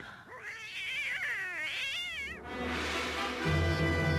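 A cat yowling: one drawn-out, wavering screech whose pitch bends up and down for about two seconds. Orchestral score then comes in, with a deep bass note swelling near the end.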